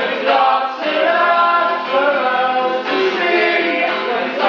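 Several men singing together in a loud, chant-like singalong, with an acoustic guitar being strummed along.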